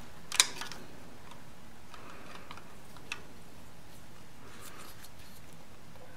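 Wrench and screwdriver on a Honda Sabre V4 valve adjuster locknut and screw, while the locknut is snugged with the screw held still to set valve clearance: one sharp metal click about half a second in, a fainter click about three seconds in, and soft handling noise between.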